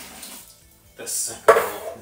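Hot water being poured out of an emptied metal malt extract tin into a plastic bucket, followed about one and a half seconds in by a sharp metallic clank from the tin.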